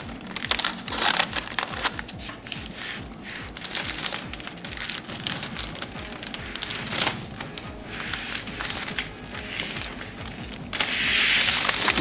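Background music under crinkling and crackling of foam masking tape being handled and pressed into a car door jamb. A louder rasping hiss about a second before the end.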